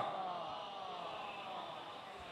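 The last drawn-out, falling note of a man's voice over the hall's loudspeakers rings on and dies away over about a second. After it there is only faint, steady room noise.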